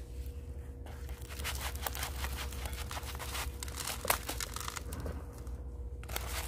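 Gritty granular potting soil crunching and trickling as it is poured from a plastic scoop into a pot around a succulent's roots, a steady crackle of many small grains, starting about a second in, with one sharper click about four seconds in.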